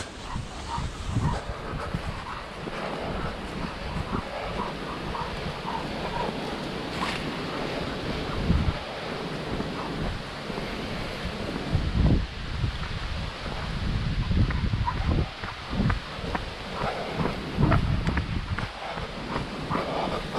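Wind buffeting and rustling on a body-worn microphone during a walk, with irregular low thumps of footsteps and movement.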